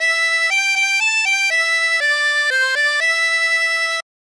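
Diatonic harmonica playing a ten-note phrase of single notes, E G G A G E D C D E, in the high holes: blow 8, blow 9 twice, draw 10, blow 9, blow 8, draw 8, blow 7, draw 8, blow 8. The notes move in quick steps and the last E is held for about a second.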